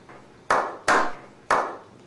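Slow hand claps: three single claps, spaced out, each with a short ringing tail.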